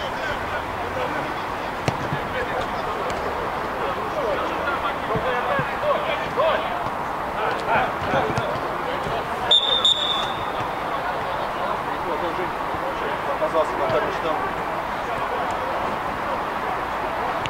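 Football players calling and shouting to each other on the pitch, with occasional thuds of the ball being kicked. A short, high whistle blast sounds about ten seconds in.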